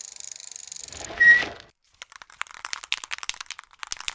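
Title-card sound effects. A fast-fluttering high hiss runs until about a second in, then a short loud hit with a brief clear tone, then a run of quick irregular clicks.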